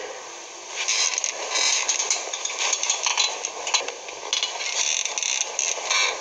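Irregular rustling and scraping noises in uneven bursts.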